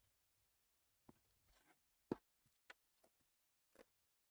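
Hands handling a shrink-wrapped trading-card box: faint scattered taps and plastic crinkles, with one sharper tap about two seconds in.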